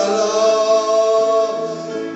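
Singing: one long sung note held at a steady pitch, fading a little near the end.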